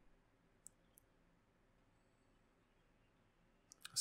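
Near silence: faint room tone with two short faint clicks about a second in, and another just before the end.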